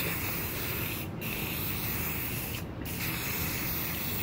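Aerosol spray can of Rust-Oleum gloss clear coat hissing steadily as it sprays, briefly let off twice: about a second in and again near three seconds.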